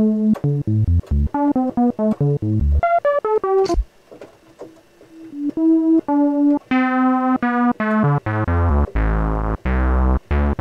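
Analog modular synthesizer playing a fast run of short notes: a sawtooth oscillator through a Synthesizers.com Q150 transistor ladder low-pass filter in its 24 dB-per-octave mode, the cutoff shaped by an inverted envelope. A short pause comes about four seconds in, then longer held notes, and near the end a brighter, fuller run as the filter knobs are turned.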